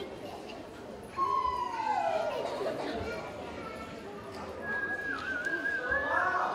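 Children's voices: one long drawn-out call falling in pitch about a second in, some scattered voices, and a high, slightly wavering held note near the end.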